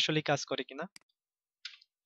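A single sharp computer mouse click about a second in, reloading the page in the web browser.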